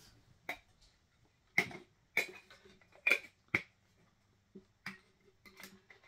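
Sharp clicks and taps of vinyl figures and soda cans being handled and set down on a table, about seven at irregular intervals, over a faint steady hum.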